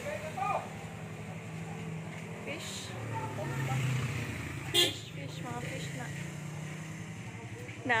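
A motor vehicle's engine hums steadily, swelling a little around the middle. A single sharp click comes just before five seconds in.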